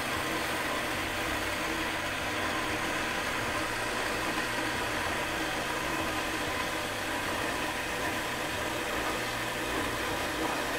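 Ellis 1600 metal-cutting band saw running steadily: an even electric-motor hum with a constant mechanical hiss from the blade and drive.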